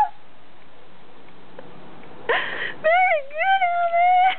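A high-pitched voice gives a short breathy exclamation a little past halfway, then a long drawn-out squeal that rises and then holds its pitch.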